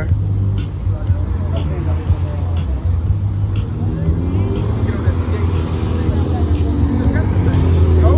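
Cars driving slowly past at close range over a steady low rumble. An engine note builds from about halfway through and gets loudest at the end as a car passes right by.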